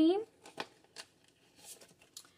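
Paper banknotes and a cash-binder envelope being handled: a couple of light clicks, then a soft rustle of paper.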